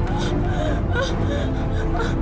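Background music with long held notes, with a person's short gasps and whimpers over it.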